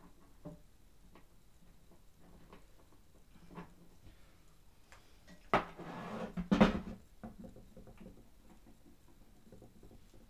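Small clicks and knocks of CNC router frame parts being handled on a wooden table, with a louder knock about halfway through followed by a second of scraping, clattering handling.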